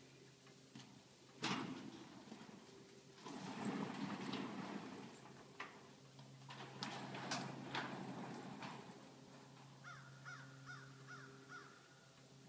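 A sharp knock about a second and a half in, then stretches of rustling noise, and near the end a bird calling in a quick series of short repeated notes.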